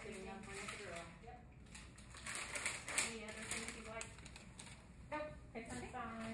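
Indistinct voices talking in the background, too unclear to make out words, with a few clicks and rustles of handling; the sharpest click comes about three seconds in.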